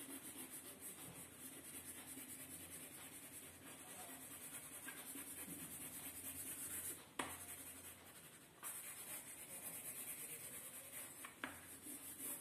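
Yellow crayon rubbed back and forth across paper in rapid strokes, colouring in a background: a faint, continuous scratchy rubbing with a couple of short breaks a little past halfway.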